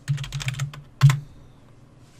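Computer keyboard being typed on, a quick run of keystrokes that ends about a second in with one louder click.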